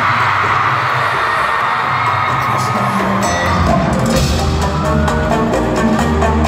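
Live concert: the audience cheers and screams over music from the stage, and a heavy bass beat comes in about halfway through.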